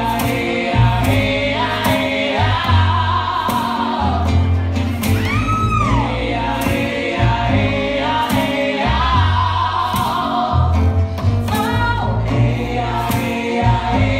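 Live funk-style band music: a woman singing lead over an acoustic guitar and bass guitar with a steady, repeating bass groove. About five seconds in, a high vocal note swoops up and back down.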